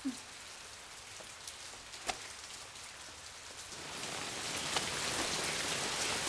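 Steady rain falling, faint at first and growing heavier about four seconds in. There is a single sharp tick about two seconds in.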